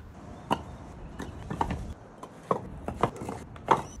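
Old clay bricks knocking against one another as they are stacked into a pile by hand: about six hard, sharp clacks at uneven intervals, the loudest near the end.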